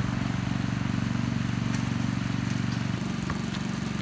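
An engine running steadily with a low, even drone, easing slightly in pitch and level about three seconds in. A faint knock follows shortly after.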